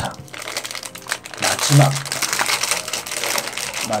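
Foil blind-bag wrapper of a Sonny Angel mini figure crinkling as it is handled in the hands, loudest in the middle.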